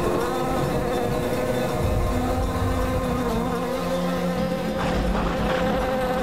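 Background score: a sustained, buzzing drone holding several steady notes, with a lower note joining about two seconds in.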